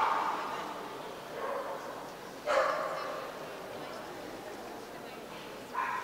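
A dog barking three times in a large hall, with single barks about 1.5, 2.5 and 6 seconds in; the middle one is the loudest. Each bark echoes off the hall.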